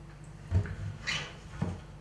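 Wooden kitchen cupboard door being opened: a low knock about half a second in, a short scraping swish, then a lighter click.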